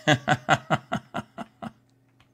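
A man laughing: a run of about eight short chuckles in quick succession, each quieter than the last, dying away shortly before the end.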